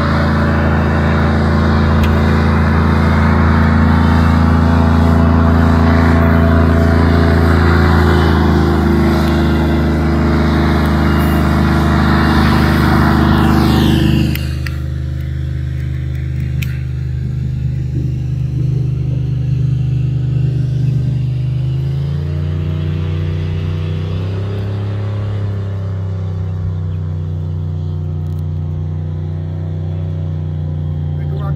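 Airboat engine and propeller running hard at speed. About halfway through the throttle is cut back sharply and the sound drops to a lower, quieter run, with the revs rising briefly a few seconds later.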